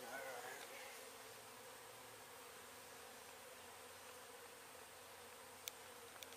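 Faint, steady buzzing of a mass of honeybees, with a sharp click near the end.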